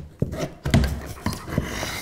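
A hand tool working behind a painted wooden baseboard to loosen it from the wall, giving a handful of short knocks and scrapes, the heaviest a dull knock just under a second in.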